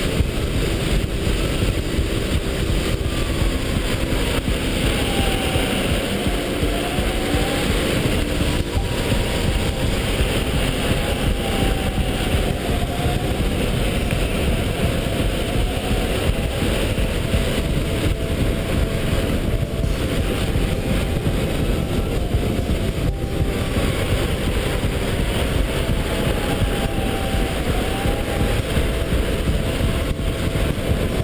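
Heavy wind rushing over a helmet-mounted camera on a DeWalt 84V electric go-kart at speed, with the kart's electric motor whining faintly underneath, its pitch dipping and rising again every few seconds as the kart slows for corners and speeds up.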